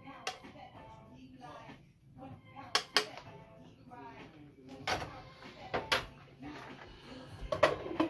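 A metal spoon and dishes clink sharply about six times, in pairs around the third and sixth seconds and once more near the end, as sauce is served from a skillet into glass bowls. Background music and voices play underneath.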